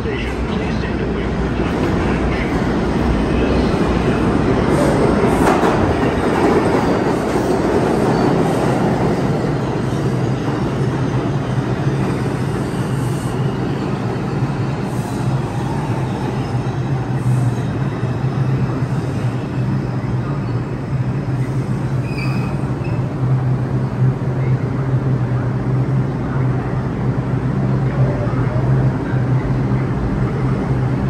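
A New York City subway train, an R142-series car set, pulls into the station on the express track. Its wheels rumble on the rails, loudest a few seconds in as it passes close by. As it slows to a stop it settles into a steady low hum.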